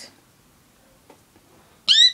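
A short, high-pitched squeal near the end that rises sharply in pitch and then holds.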